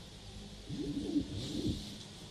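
Soft low knocks and creaks, with a brief rustle near the end, over a steady low hum: handling noise at a pulpit microphone.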